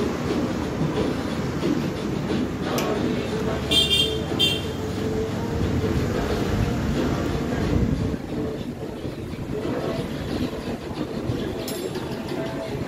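Steady traffic noise with two short horn toots about four seconds in.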